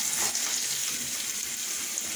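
Freshly added sliced onions sizzling in hot oil in a frying pan: a steady, even hiss.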